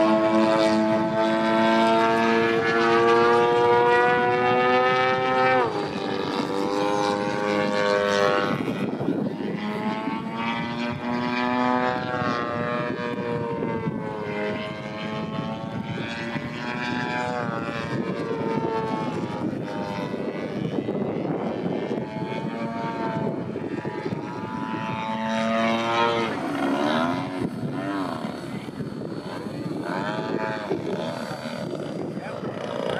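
Engine and propeller of a large radio-controlled 3D aerobatic airplane in flight. Its pitch rises and falls again and again as the throttle changes through the manoeuvres, and it is loudest over the first few seconds.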